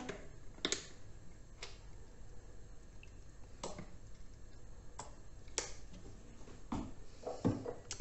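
Quiet kitchen handling: a plastic squeeze bottle of mustard squirting onto raw chicken, with about seven short soft clicks and squelches scattered through.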